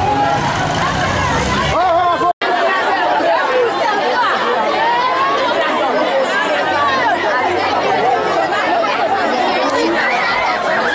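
Crowd of schoolchildren talking and calling out all at once, many overlapping voices at a steady loud level. For the first two seconds there is also a low rumble, which ends at a short drop to silence.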